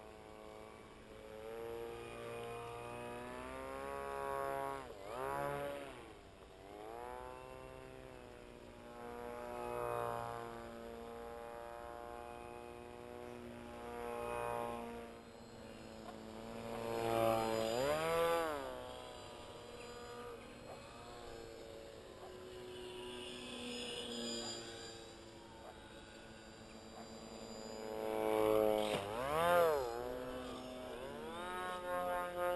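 Electric RC flying wing's motor and propeller whining, the pitch rising and falling again and again as the throttle changes and the wing makes close passes. The loudest passes come about halfway through and near the end.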